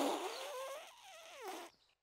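Cartoon sound of blowing into a hollow toy dinosaur tail as if it were a trumpet: a breathy, rasping hoot with a wavering, falling pitch that fades away, with one short last wobble about a second and a half in.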